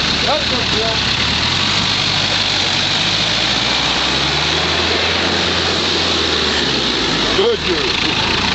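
Range Rover Turbo's engine running steadily at low speed under load as the 4x4 crawls through a deep mud rut, its note rising slightly and falling back around the middle.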